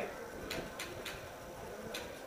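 Three sharp pops of distant shots: the first two about a third of a second apart, the third near the end.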